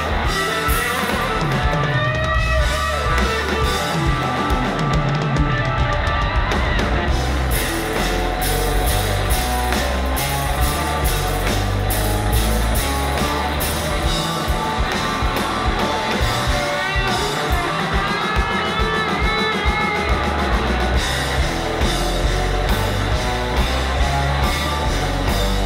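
Live rock band playing an instrumental passage: a Stratocaster-style electric guitar plays lead with bent notes over a drum kit, with bends about two seconds in and again near the end.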